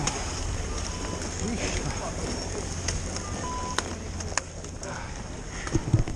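Ski-lift queue ambience: faint chatter of skiers, a steady rumble of wind on the microphone, and a few sharp clicks of skis and poles knocking together. A short beep sounds about three and a half seconds in.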